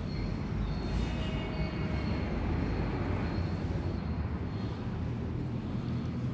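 A steady low rumble of background noise, like distant traffic, with faint thin high tones about a second in.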